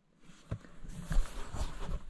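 Rustling and a few dull knocks of a camera being handled and repositioned, with light crunching in snow.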